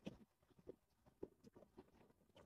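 Near silence with faint, irregular light taps and scuffs, the footsteps and shuffling of people moving on asphalt.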